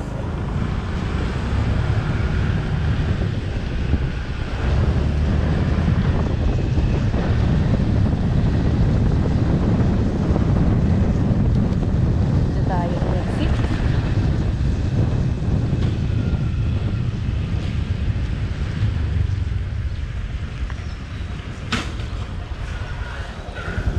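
Wind buffeting the bare microphone of a helmet-mounted GoPro on a moving Honda Click 150i scooter: a steady low rumble, with the scooter's running mixed into it.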